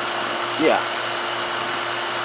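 Electric vacuum pump running steadily with a constant hum, holding a vacuum on a mason-jar chamber and drawing off the vapour of water boiling at room temperature.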